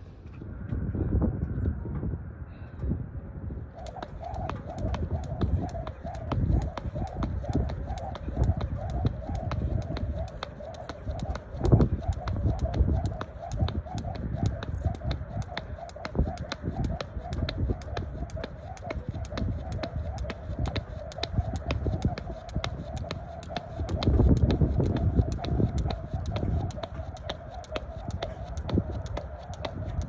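Jump rope slapping the court surface in an even rhythm, about two to three strikes a second, starting about four seconds in. A low, uneven rumble and a steady wavering tone run underneath.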